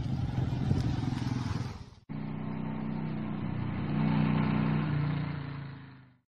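Motorcycle engine running, heard as two separate takes joined by a sudden cut about two seconds in. In the second take the engine gets a little louder around the middle and then fades out at the end.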